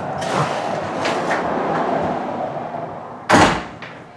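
Street-entry door swinging shut with one loud thud a little over three seconds in. It cuts off the steady background hiss of street noise coming through the open doorway, so it is much quieter afterwards.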